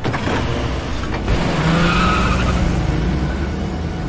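A car accelerating away hard, its tyres squealing briefly around the middle.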